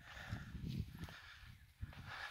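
Wind buffeting the microphone in low, irregular rumbling gusts, with a faint hiss above.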